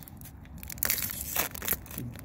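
Foil wrapper of a Magic: The Gathering Strixhaven set booster pack being torn open across the top: a burst of crinkling and tearing about a second in, lasting just under a second.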